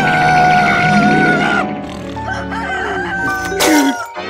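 A long cock-a-doodle-doo crow, held for about a second and a half, over cartoon background music.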